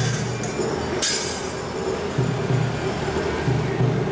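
Music from the shrine festival procession over a steady city-traffic rumble, with a short sharp hiss about a second in.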